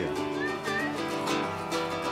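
A lute being plucked, playing a tune of changing notes.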